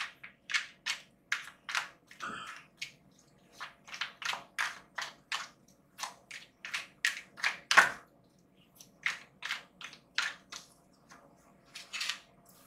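Deck of tarot cards being shuffled in the hands: a run of short, crisp card slaps, two to three a second, with one louder stroke about two-thirds of the way through.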